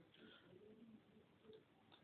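Near silence, with a few faint, low bird coos in the background.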